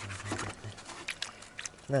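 Mute swans close by taking bread from a hand and off the water: short sounds from the birds, and a quick cluster of sharp clicks and splashes a little over a second in.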